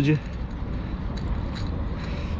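A steady low background rumble with a few faint clicks. A man's voice says one word at the very start.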